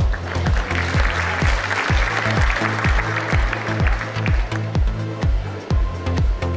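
Audience applause over electronic dance music with a steady kick-drum beat about twice a second. The clapping swells just after the start and fades out after about four seconds, while the music runs on.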